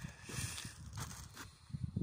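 Faint, irregular low thumps with rustling and a brief hiss: footsteps on dirt and handling noise on a handheld camera's microphone.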